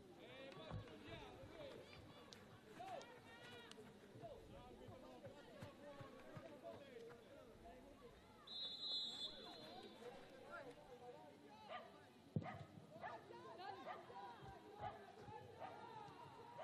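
Faint voices of players and staff calling out on the pitch. A referee's whistle sounds once, for about half a second, a little past the middle, and a single sharp thud follows a few seconds later.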